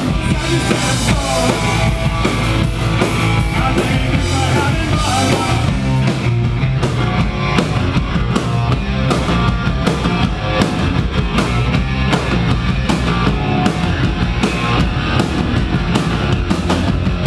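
Live punk rock band playing loud: distorted electric guitars and bass over a drum kit keeping a steady beat.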